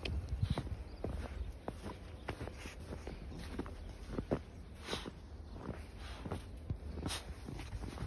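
Footsteps of a dog and a person walking through deep snow: many short, irregular crunches. A low steady rumble runs underneath.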